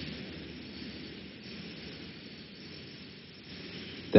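Steady background hiss and low rumble of an old lecture recording, with no voice.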